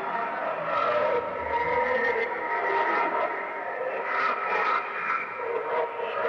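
Heavily distorted cartoon soundtrack: a dense, noisy wash with wavering, smeared tones and a few louder swells, with no clear melody or words.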